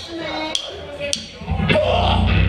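A drummer's count-in of sharp, evenly spaced clicks, then a live hardcore band crashes in with loud distorted guitar, bass and drums about one and a half seconds in, over crowd chatter.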